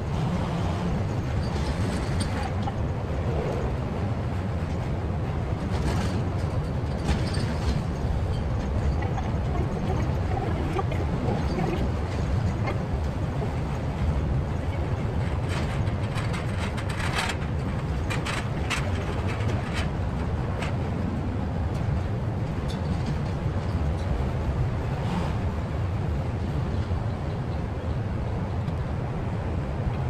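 Steady low rumble of city background noise, typical of distant road traffic, with a few faint clicks in the middle.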